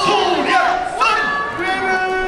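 A yosakoi dance team shouting a drawn-out call together, several voices held long and swooping up and down in pitch.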